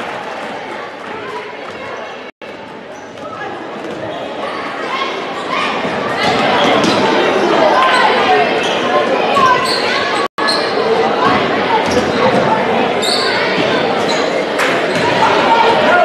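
Basketball being dribbled and bounced on a hardwood gym floor during live play, over the chatter and shouts of a crowd in a large, echoing gym. The crowd noise grows louder about six seconds in, and the sound cuts out twice for a split second.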